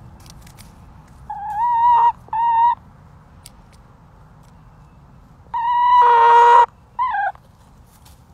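Backyard hens calling: four drawn-out, pitched calls, two close together about a second and a half in and two more after a pause, the third the longest and loudest and the last one short and falling in pitch.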